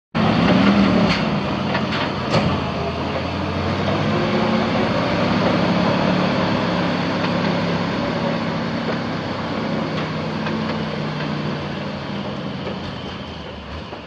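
Gasoline engine of a 1973 Bantam T350A truck crane running steadily, with a few sharp clicks in the first three seconds and a slight fade near the end.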